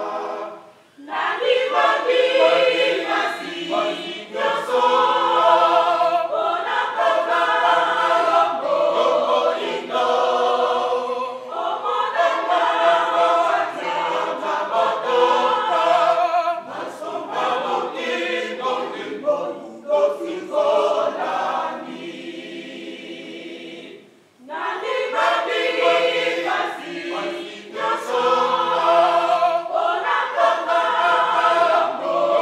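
A women's church choir singing a hymn under a conductor, with short breaks between phrases about a second in and again near 24 seconds.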